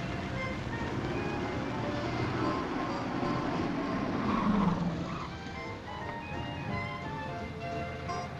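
Orchestral film score playing over the low running of a car engine, with a louder swell about halfway through.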